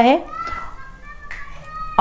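Faint high-pitched voices in the background, like children calling, with one short click a little past a second in.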